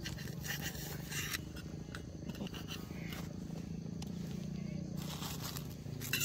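Indistinct background voices with brief rustling and scraping, loudest about a second in.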